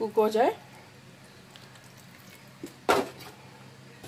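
Water poured in a thin stream onto layered rice in a pot, a faint trickle, with a single sharp knock about three seconds in.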